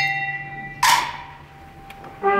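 A lull in the band's march filled by struck bell-like metallic percussion: a ringing note dies away, a second stroke sounds about a second in and fades.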